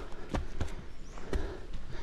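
Footsteps and shuffling on a dirt trail covered in dry leaves: a handful of soft, irregular thuds over a low rumble.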